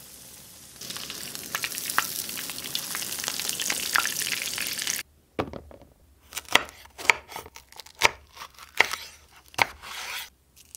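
Breaded chicken fillet sizzling in hot oil in a frying pan, with small crackles; the sizzle gets louder about a second in and cuts off suddenly halfway through. Then a chef's knife slicing long sweet peppers on a wooden cutting board, a series of sharp cuts about two a second.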